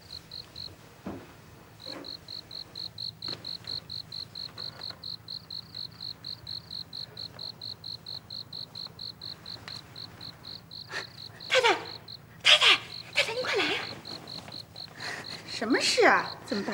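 Crickets chirping steadily, a regular train of high chirps at about four a second, with a short break about a second in. Loud calls from a voice break in near the end.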